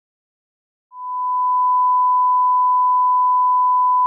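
A steady 1 kHz reference test tone of the kind played with SMPTE colour bars. It starts about a second in and holds one unchanging pitch.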